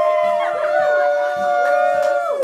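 Several voices holding long high notes together, sliding between pitches, in a loud sustained group 'ooh'.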